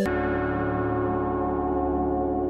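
Background music: a steady, held chord of ringing bell-like tones over a low drone, which comes in sharply at the start.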